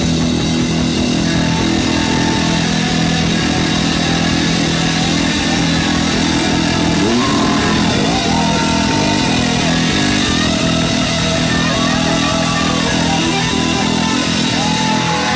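Live heavy rock band playing loud, with heavily distorted bass and guitar holding low, sustained notes. Sliding, bending notes come in higher up from about halfway through.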